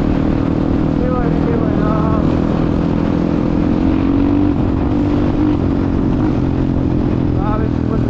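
Dirt bike engine running at a steady pace while riding, heard from the rider's helmet camera with wind noise. Brief snatches of a voice come through about a second in and near the end.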